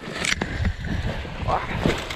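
Paraglider pilot's boots landing and scuffing on rocky, grassy scree, with a few short knocks of stones, over wind rumbling on the microphone.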